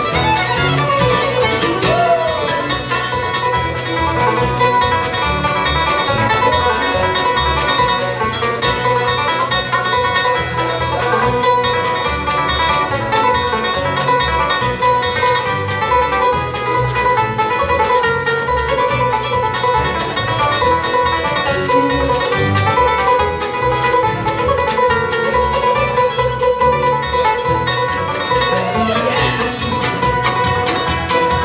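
Bluegrass band playing live, with banjo, fiddle, mandolin, acoustic guitar and upright bass together over a steady beat.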